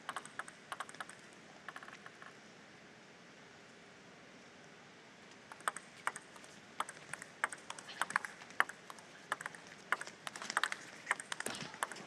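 Table tennis ball clicking: a few bounces at the start, then a quick rally from about five and a half seconds in, the ball cracking off rackets and table in fast alternating hits, ending on a ball that clips the top of the net.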